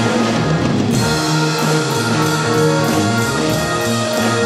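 A rock band playing an instrumental passage with no vocals: a drum kit and guitar over a steady groove, with a chord change about a second in.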